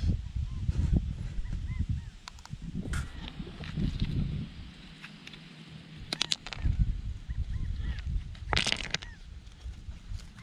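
A hand picking through river gravel: sharp clicks of stone on stone about six seconds in and again near nine seconds, over a low rumble on the microphone. A bird calls repeatedly in the background.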